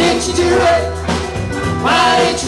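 Live band playing a rock song: electric guitars, bass guitar and drum kit, with a bending melody line above the steady bass.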